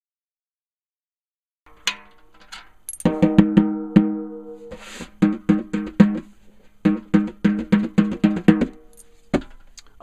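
Snare drum with a freshly tensioned Remo Coated Controlled Sound top head, tapped in quick runs of light strikes around its tension points, starting about two seconds in. Each run leaves a clear ringing pitch. The snare wires are not yet fitted, so there is no snare buzz. The taps check that the head is tensioned evenly all the way round.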